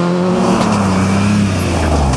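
BMW E36 3 Series coupé rally car passing at speed, its engine running hard on a steady note that drops in pitch near the end.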